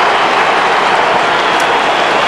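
Large stadium crowd cheering and applauding a goal, a steady wash of noise.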